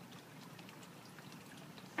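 Faint, steady background hiss with a few soft ticks; no distinct sound stands out.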